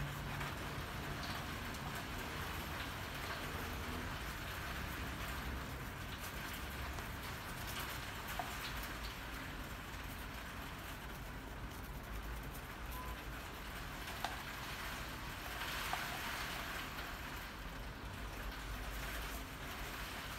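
Back of a palette knife dabbing and dragging thick acrylic paint on a paper painting pad: a soft, steady scratchy rustle with a few light clicks.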